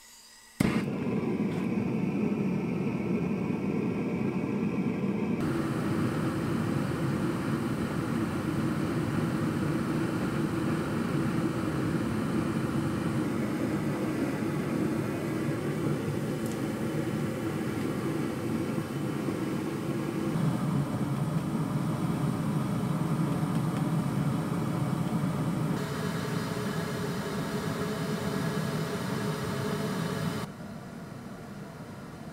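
Gas burner at the base of a kiln lighting with a sudden pop just after the start, then burning with a steady, low, rushing flame noise that shifts in tone a couple of times.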